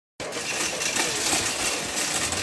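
Steady outdoor background noise, with a hiss that is strongest in the upper range.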